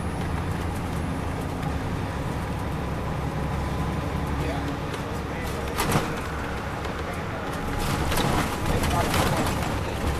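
Inside a 2002 MCI D4000 coach under way: its Detroit Diesel Series 60 engine runs with a steady low rumble under road and tyre noise. A sharp knock comes about six seconds in.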